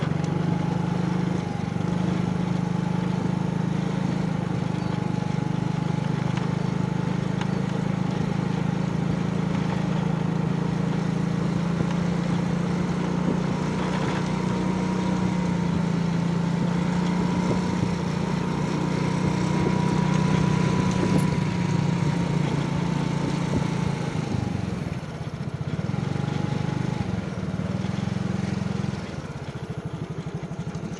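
Small motorcycle engine running steadily at cruising speed, a low hum with a faint whine above it, heard from the rider's position. The engine eases off briefly twice near the end.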